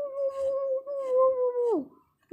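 A person's voice holding one long, steady howl-like 'ooo', which drops sharply in pitch and stops near the end.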